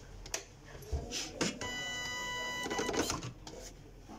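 Epson LQ-310 dot matrix printer mechanism: a few clicks and knocks, then about a second and a half in a motor runs with a steady whine for roughly a second before stopping, followed by more knocks.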